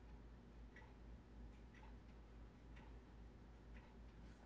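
A clock ticking faintly, about one tick a second, over a low steady hum.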